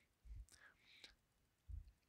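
Near silence, with faint breath and mouth noise and a couple of soft low bumps.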